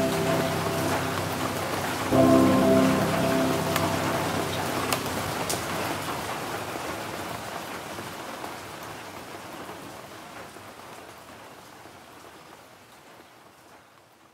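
Rain sound layered into an electronic music track, with a held synth chord struck about two seconds in that dies away; the rain then fades out slowly toward near silence as the track ends.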